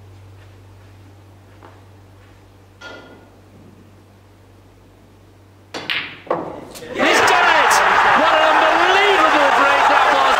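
Snooker balls clicking over a steady mains hum: a faint tick, then a sharp click with a short ring about three seconds in, and a few loud knocks about six seconds in. From about seven seconds in, loud cheering and shouting break out as the break is completed.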